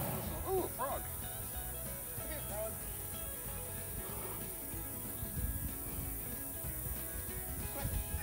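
Quiet background with a few faint words or laughs in the first seconds and faint steady music underneath; no distinct sound event stands out.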